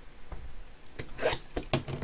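A sealed cardboard trading-card box being handled on a mat. A few light taps and scrapes, a brief crinkly rustle just past the middle, and a quick run of clicks near the end.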